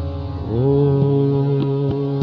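Hindustani classical singing in raag Basant Mukhari: the voice glides up into a long held note about half a second in, over a few light tabla strokes.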